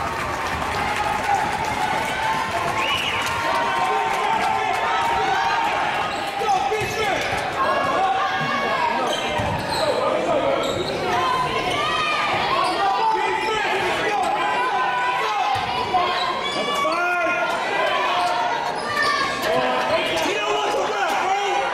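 Basketball being dribbled on a gym's hardwood floor amid the steady chatter and calls of spectators. From about a third of the way in come many short high squeaks, typical of sneakers on the court.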